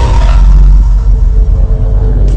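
Intro sting of a logo animation: a loud, deep bass rumble under fading synthesized tones, the tail of a cinematic hit.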